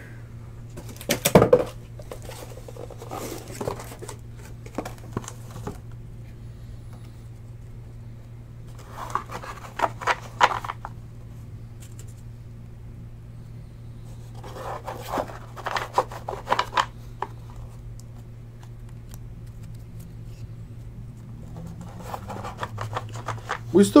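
Trading cards and packs being handled and stacked on a table: a sharp knock about a second in, then several short bursts of shuffling and rustling, over a steady low hum.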